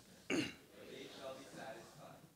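A man clearing his throat once, short and sharp, about a third of a second in.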